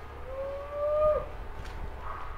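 A man's voice giving one long yell of about a second, held on one pitch and rising slightly before breaking off, at the moment a bungee jumper leaps from the platform. A low steady rumble runs underneath.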